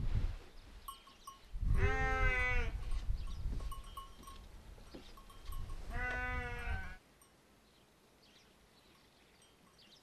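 Sheep bleating twice, each call about a second long with a wavering pitch, the second some four seconds after the first. The sound drops away suddenly after the second call.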